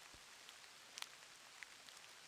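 Near silence: faint outdoor hiss with a few soft ticks.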